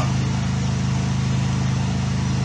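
A steady, low hum from a running motor or engine, with a faint even pulse and no change in pitch.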